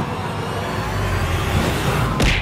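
Road traffic noise: a steady rumble and hiss of a motor vehicle going by, with no music or speech.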